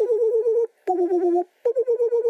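King Ghidorah's squeaky, rapidly warbling screech, three calls in a row with short gaps between them.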